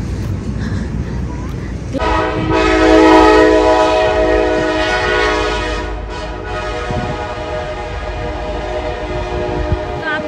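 Locomotive air horn sounding one long steady blast, a chord of several tones, starting about two seconds in and growing weaker after about six seconds, over a low rumble.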